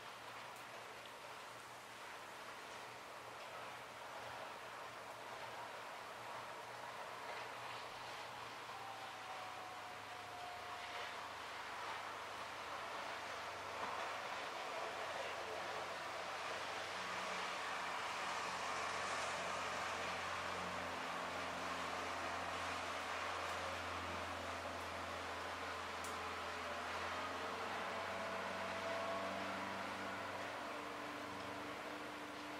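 Faint background noise: a steady hiss with a low hum underneath that slowly grows louder through the second half.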